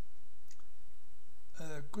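A single faint mouse click on a quiet background, followed near the end by a man starting to speak.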